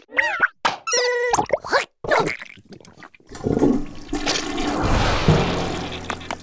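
Cartoon sound effects: short squeaky vocal sounds gliding up and down in pitch, then from about three seconds in a loud rushing, flush-like water noise with a low rumble that fades out near the end.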